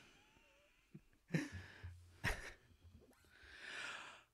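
Two soft knocks, then a long breathy exhale close to the microphone that swells near the end and stops.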